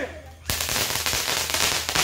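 A firework going off: about half a second in it starts suddenly into a loud, dense crackling hiss of rapid small pops as its sparks shower.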